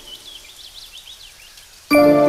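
A quiet gap in the cartoon's background music, with faint, high, repeated chirps. Just before the end, music with bell-like mallet-percussion notes comes in abruptly.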